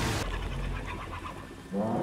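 Faint bird calls over quiet night-jungle ambience in a TV episode's soundtrack, with a voice starting near the end.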